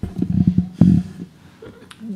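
A burst of low knocks and rumbling in the first second, the loudest near the end of it, then quieter: microphone handling noise, bumps on a lectern or desk picked up through the microphone.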